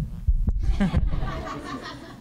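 A tabletop microphone on its stand being handled and slid along a table, with low bumps and a sharp click about half a second in. Light laughter from people in the room follows and fades towards the end.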